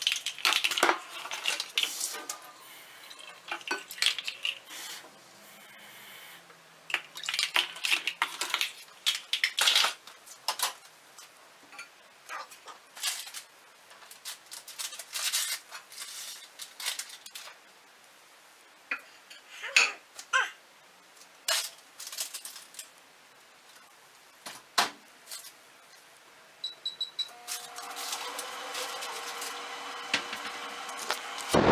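Kitchen clatter of dishes and cutlery being handled, with sharp, irregular clinks of a bowl and spoon scattered throughout. Near the end a microwave beeps briefly and starts running with a steady hum.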